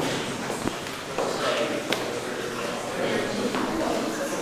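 Background chatter of several people talking indistinctly, with footsteps and a couple of sharp knocks.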